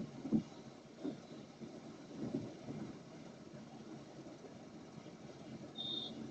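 Car interior noise while driving slowly: a low engine and road rumble with a few soft low thumps, and a short high squeak right at the end.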